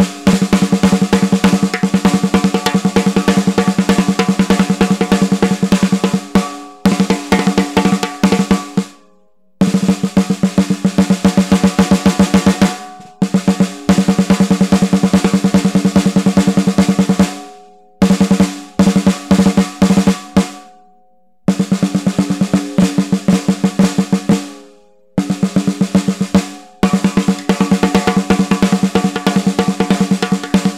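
DW 14x6 VLT maple snare drum with a Remo Coated Emperor batter head played with sticks, snare wires on: fast strokes and rolls in runs of a few seconds each, separated by brief pauses. The drum has just been tuned with a drum dial and its snares tightened against the bottom head.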